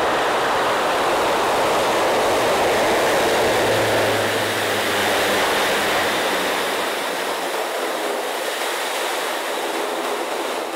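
Lockheed C-130J Hercules's four turboprop engines and six-bladed propellers running at high power as the aircraft moves along a snow runway: a loud, steady rush of noise, with a low hum joining in for a few seconds near the middle.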